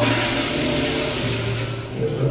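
Commercial flushometer toilet flushing: a loud, steady rush of water through the flush valve into the bowl.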